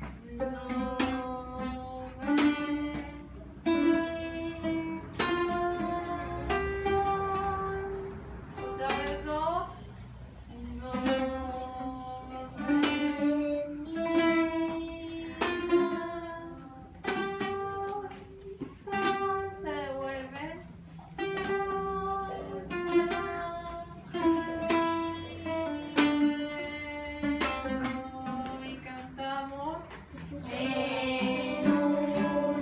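Several children's acoustic guitars strummed together in a rhythmic chord pattern, with a voice singing a simple melody over the chords.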